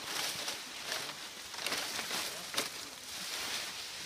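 Cohune palm fronds rustling in uneven bursts as they are handled close by, with one sharper snap about two and a half seconds in.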